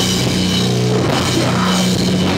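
Heavy rock band playing live in a rehearsal room: electric guitar and bass guitar holding low notes over a drum kit with cymbals.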